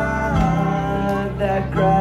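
A live acoustic string band plays on, with mandolin, guitar and double bass. Plucked notes ring over a steady bass line.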